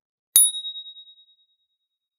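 A single bright bell ding sound effect, struck about a third of a second in and ringing out with a wavering fade over about a second and a half.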